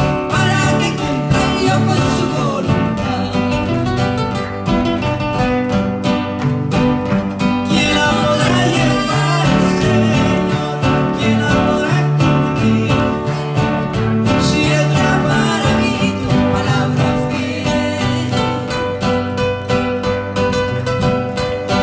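A man and a woman singing a Spanish-language Christian song together, accompanied by two acoustic guitars played in a steady rhythm.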